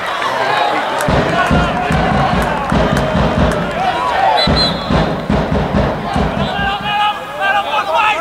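Football crowd shouting and chanting in the stand. From about a second in there is a steady rhythm of low thuds, pausing briefly midway.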